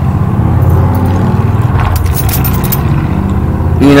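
Loud, steady low rumble, with a few faint clicks about two seconds in.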